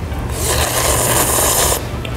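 A person slurping instant ramyeon noodles through the lips in one long slurp of about a second and a half.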